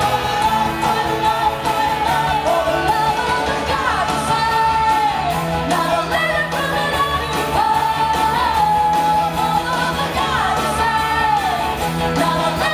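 Live indie rock band playing: electric guitars, keyboards, bass and drums, with a woman's lead vocal holding long, gliding notes over the band, picked up from the audience.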